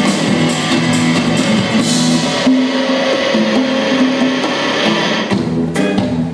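Live rock band playing an instrumental passage on electric guitars, bass and drum kit. The cymbals drop out about two and a half seconds in, leaving held guitar and bass notes, and the drums come back in near the end.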